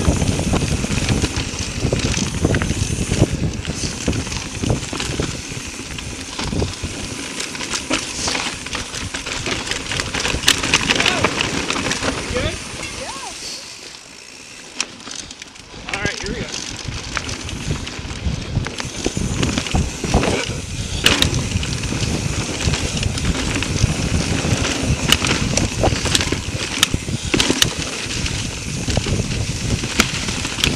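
Mountain bike riding over dry leaf-covered dirt singletrack: tyres crunching through leaves and the bike rattling over bumps, with wind on the microphone. It drops quieter for a couple of seconds about halfway through.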